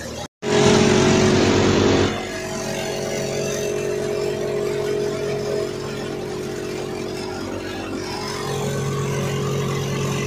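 Tractor-driven soybean thresher running steadily while threshing. It is louder for about a second and a half after a brief break in the sound near the start, then settles to an even running sound.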